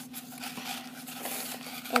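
Toilet paper and a cardboard tube rustling and crinkling as hands stuff paper into the roll.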